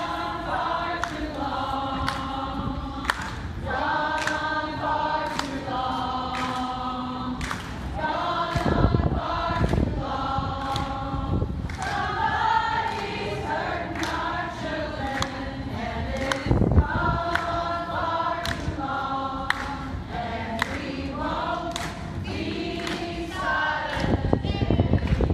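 A group of demonstrators singing together, a slow song of long held notes sung phrase after phrase, with a couple of brief low rumbles on the microphone.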